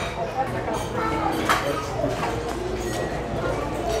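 Background chatter of people in a busy indoor lounge over a steady low hum, with a brief sharp click about one and a half seconds in.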